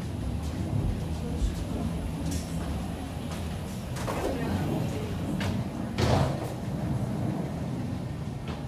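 Steady low rumble of airport walkway ambience with a few sharp knocks and thumps, the loudest about six seconds in.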